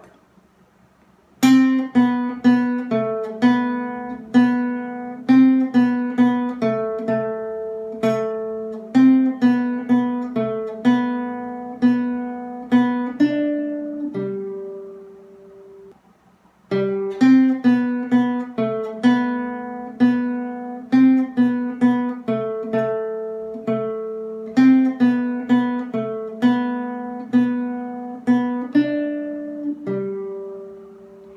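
Acoustic guitar playing a slow single-note melody, plucked one note at a time on the upper strings, in two phrases that each end on a held note. It starts about a second and a half in, and there is a short pause near the middle.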